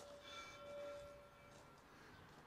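A bell rings faintly once, a single clear tone that dies away within about a second and a half; otherwise near silence.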